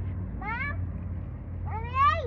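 Two short, high-pitched vocal calls, each rising in pitch; the second is longer and turns down at its end.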